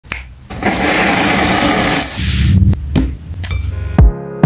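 A finger snap, then about a second and a half of loud rushing noise, followed by a low rumble and a few sharp clicks.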